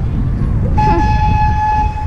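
Zoo train whistle blowing one steady note, starting just under a second in and held for over a second, over a steady low rumble of wind on the microphone.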